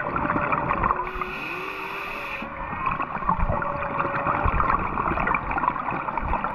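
Humpback whale song heard underwater: long pitched calls that glide in pitch, one rising early on and a steadier, higher one a little after the middle, over a constant crackling underwater background. A brief hiss starts about a second in and lasts about a second and a half.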